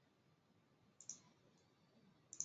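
Near silence broken by a single short computer mouse click about halfway through.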